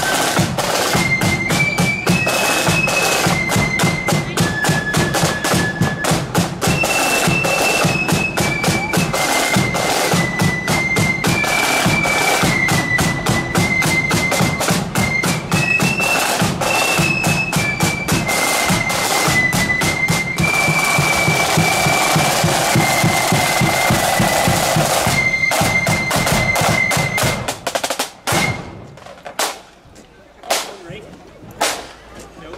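Blood-and-thunder marching flute band playing: a high flute melody over rapid snare drumming, bass drum and cymbals. The tune ends about two seconds before the end, leaving a few scattered drum hits.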